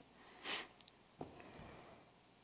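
A single short sniff through the nose, then a soft knock about a second later, faint against the quiet of a small room.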